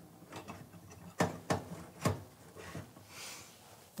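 A few light clicks and knocks of metal being handled: a dishwasher water inlet valve's metal mounting bracket shifted into position against the sheet-metal frame, about four separate sharp clicks in the middle of the stretch.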